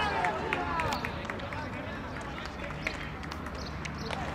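Players' voices shouting across an outdoor football pitch, loudest in about the first second, then fainter calls over the open-air background with a few short sharp knocks.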